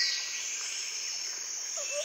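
A steady high-pitched hiss with a chirring texture and no low rumble beneath it.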